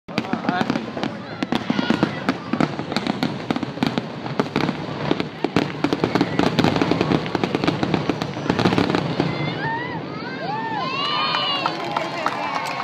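Fireworks grand finale: a dense, rapid barrage of bangs and crackles that thins out about nine seconds in. Voices calling out, rising and falling in pitch, take over near the end.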